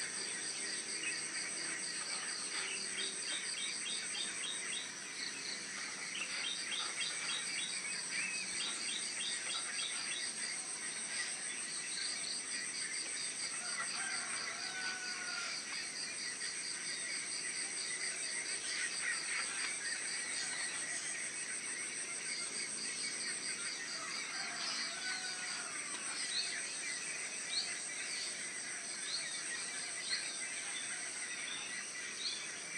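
A steady, high-pitched pulsing chorus of insects with many birds chirping over it. Twice, about a third of the way in and again near the three-quarter mark, a lower bird call slides in pitch.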